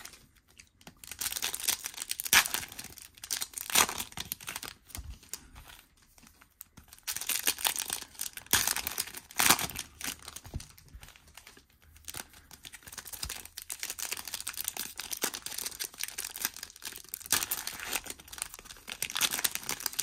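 A shiny trading-card pack wrapper being torn open and crinkled by hand, then the cards handled. Irregular crackling rustles, with sharper tearing bursts now and then.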